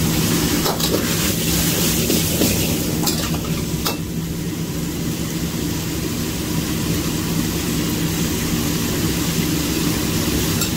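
Stir-fry sizzling in a wok as wide rice noodles and chicken are turned with a metal spatula, with a few sharp clicks and scrapes of the spatula against the wok in the first four seconds. A steady low hum runs underneath.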